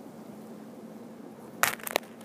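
Handling noise on the camera: a low hiss, then two short knocks or scrapes near the end as a hand holding the lizard bumps against the device.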